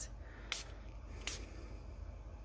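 Hand spray bottle spritzing twice, two short hissing puffs about a second apart, misting the surface of freshly poured epoxy resin.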